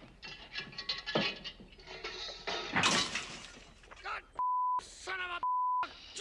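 Noisy commotion of shouting and clatter, with a loud crash of something breaking about three seconds in. Near the end a steady censor bleep cuts in twice, alternating with shouted words.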